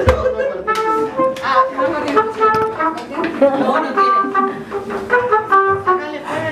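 Mariachi band playing, brass carrying a melody in short held notes.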